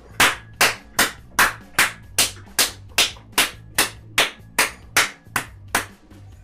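Hands clapping in a steady rhythm, about fifteen sharp claps at about two and a half a second, over quiet background music.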